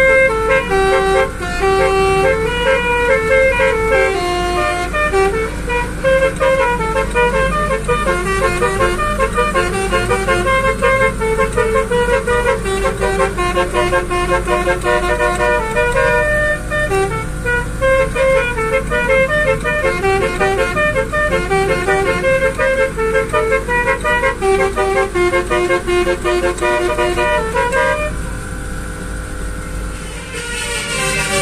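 Basuri telolet multi-tone air horns on a car playing a melody, keyed from a melodica-style keyboard: a long run of short, stepped horn notes that stops about two seconds before the end. The car's engine and road noise rumble underneath.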